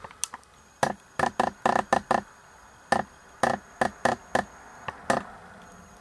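Irregular sharp clicks and light knocks, about a dozen in a few seconds, from handling the video camera as it zooms in on a close-up.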